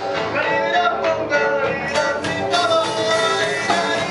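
Rock band playing live: electric guitars, keyboard and drums, with a voice singing over them, heard from among the audience.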